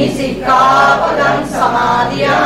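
Buddhist Pali chanting: drawn-out melodic phrases of the refuge and precept recitation sung by voices, with a short break about half a second in before the next phrase begins.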